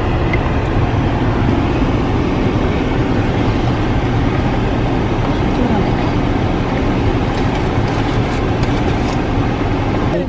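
Steady low noise of a car idling, heard from inside the cabin.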